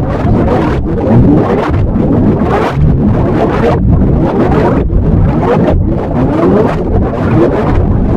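Loud, heavily distorted, effect-processed audio: a dense, smeared noise with repeated sliding sweeps, broken by brief dips about once a second.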